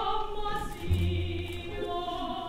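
Operatic singing: a soprano voice sings a phrase with accompaniment, and a low held note sounds for under a second about a second in.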